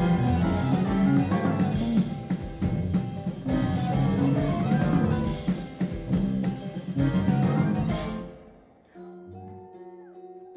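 Live rock band with drums, bass, guitar, keyboards and saxophone playing loudly together, then cutting off abruptly about eight seconds in; only a quiet sustained chord remains near the end.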